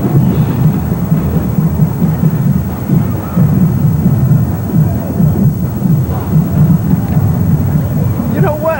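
Marching band drums playing loud and low, a dense pulsing rumble of percussion with little above it.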